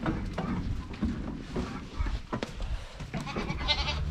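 Boer goats bleating, with one high bleat near the end, among scattered knocks.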